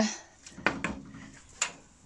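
Wooden spatula knocking against a nonstick frying pan while stirring minced chicken: four sharp knocks over about a second and a half.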